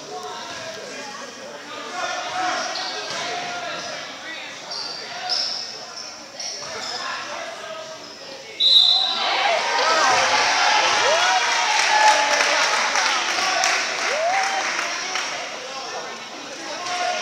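Basketball being dribbled on a hardwood gym floor, with sneaker squeaks and spectators talking, echoing in the hall. About halfway through the crowd noise jumps up suddenly to loud shouting and cheering, with the ball's bounces and squeaks running on under it.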